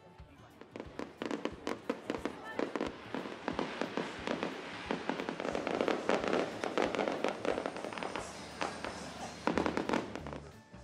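Aerial fireworks bursting and crackling in quick succession, sparse at first and building into a dense barrage of bangs and crackles, with a loud burst near the end.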